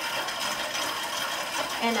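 Indoor spinning bike's flywheel and drive whirring steadily under pedalling, with a faint steady tone running through it. A voice starts near the end.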